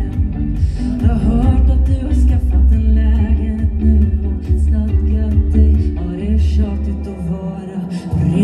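Live amplified pop performance: a female vocalist singing into a handheld microphone over electric guitar, with a heavy low end that drops away just before the end.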